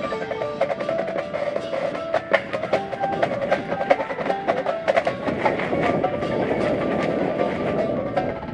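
Percussion ensemble playing: marimbas and other mallet keyboards sound pitched notes over snare and bass drum strikes. The playing grows denser, with rolls, in the second half.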